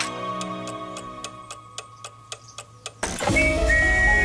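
An antique mechanical clock ticking fast and crisply, about four or five ticks a second, as soft music fades away beneath it. About three seconds in a sudden loud sound breaks in as the hands reach twelve, and music swells back.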